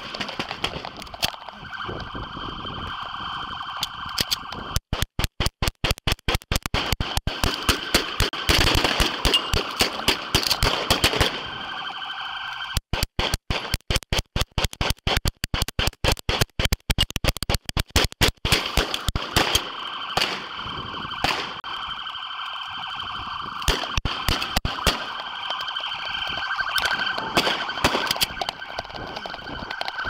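Handgun gunfire in rapid strings of shots, heaviest in two long volleys in the first half, then scattered shots. Underneath runs a steady electronic tone like a siren or alarm.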